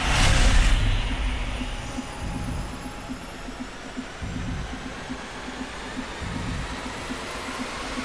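Background sound bed under title cards: a rush of noise swells up at the start, then settles into a steady rumble with a quick, even low pulse, about four a second.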